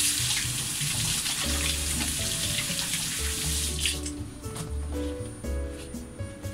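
Water running from a kitchen tap into the sink while hands are washed, stopping about four seconds in.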